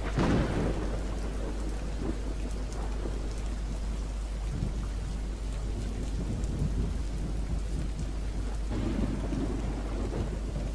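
A steady rushing noise over a constant low hum, with a louder rumble just after the start that dies away over about a second, and a smaller swell near the end.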